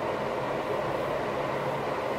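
A steady background rumble and hiss with no clear events.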